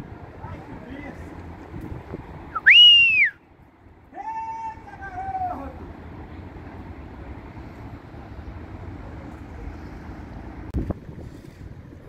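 A person gives one loud, sharp whistle about three seconds in, rising and then falling in pitch. This is followed by a lower call that holds and then falls away over about a second and a half, over a steady background of wind and outdoor noise.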